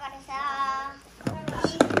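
A child's voice holding one long sung note, then a few sharp clicks of metal tools being handled in a plastic tool case, with another voice starting up near the end.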